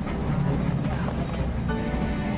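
City bus engine running with a steady low rumble, with music beginning to come in underneath.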